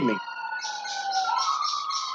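A wailing, siren-like tone slowly falling in pitch, stepping back up about a second and a half in, with a fast high-pitched warble over it.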